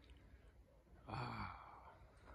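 A man's short sigh with voice in it, about a second in, lasting about half a second.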